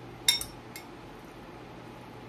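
An eating utensil clinks sharply once against a bowl with a brief ring, followed by a fainter tap; otherwise only low room tone.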